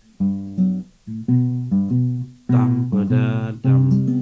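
Acoustic guitar playing a short passing run of plucked bass notes and chords, the notes changing about every half second, with a fuller strummed chord a little past the middle. It is a passing-chord lead-in to a C chord.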